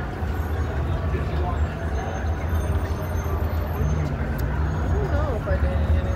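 Steady low rumble of street traffic, with faint soft voices under it.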